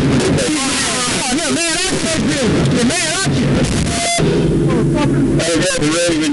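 Loud, wavering human voices without clear words, moaning and wailing in a patrol car's back seat. A short beep sounds about four seconds in, and a steady low hum carries on after it.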